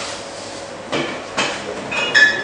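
Two sharp clinks about half a second apart: a bar spoon knocking against a tall glass mixing glass filled with ice as sugar goes in.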